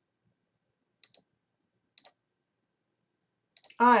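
Faint computer mouse clicks over near silence: two quick double clicks, about a second apart, as the lecture slide is advanced.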